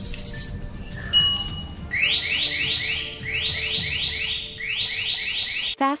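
A single short electronic beep, then a rapid electronic alarm tone: quick rising chirps repeated in three groups of four.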